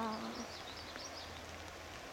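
Faint outdoor ambience: small birds twittering faintly and a low steady hum under a soft haze. A drawn-out 'wow' trails off at the start.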